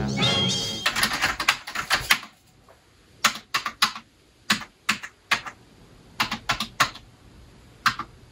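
Typing on a computer keyboard: a quick run of keystrokes, a short pause, then single keystrokes at irregular intervals. Film score music cuts off about a second in.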